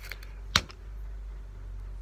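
A single sharp click about half a second in, with a fainter click at the start, from handling the knife and tape measure, over a low steady hum.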